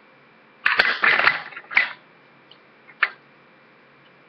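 Makeup items clattering and rustling as they are rummaged through and picked up, in a burst of clicks lasting about a second, then a single sharp click about three seconds in.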